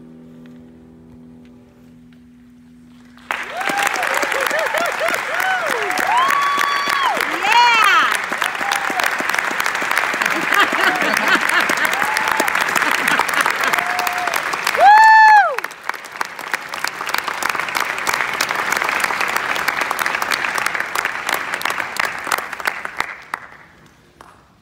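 The last held note of the song fades out, then an audience breaks into clapping and cheering about three seconds in, with whoops over the clapping. One loud whoop comes about two-thirds of the way through, and the applause dies away near the end.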